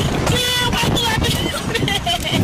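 Air rushing over the microphone of an onboard camera on a slingshot (reverse-bungee) ride, with a rider's voice calling out over it.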